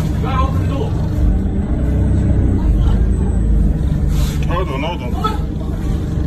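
Steady low rumble of an idling motor vehicle engine, with people's voices talking over it in short stretches.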